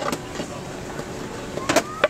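Store background noise with handheld-camera handling: a sharp click right at the start and a couple of knocks near the end.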